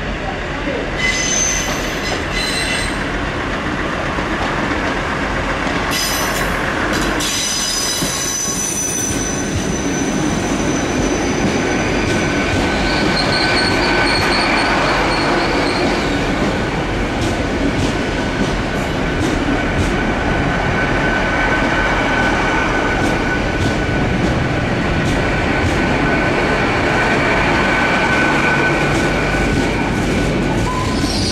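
LNER Azuma (Hitachi Class 800-series) train running slowly past at close range, its wheels squealing on the curving track. The squeal comes and goes in short high-pitched bursts over the first few seconds, then settles into a steadier high tone over the rumble of the passing carriages.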